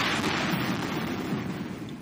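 Underwater recording of a seismic survey airgun shot: a loud rush of noise that fades slowly over two seconds.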